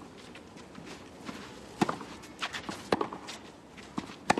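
A clay-court tennis rally: rackets strike the ball with sharp pops, two loud hits about a second apart in the second half, over the scuffing and sliding of players' shoes on clay.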